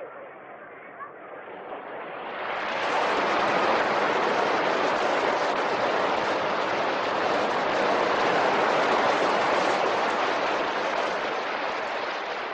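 Sea surf rushing: a steady wash of noise that swells up about two seconds in, holds, then slowly eases near the end.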